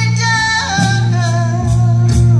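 A woman singing with a live band: long, wavering sung notes over electric bass and drums.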